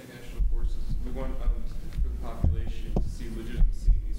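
A man's voice asking a question, indistinct, over a heavy low rumble with a few thumps.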